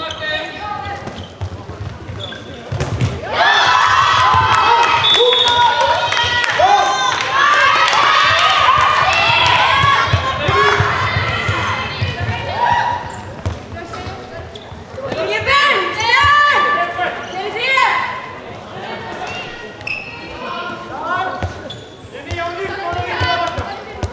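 A handball bouncing on a sports-hall floor during play, under many voices shouting and calling at once, echoing in the large hall; the shouting is loudest for about ten seconds from roughly three seconds in, and swells again after the middle.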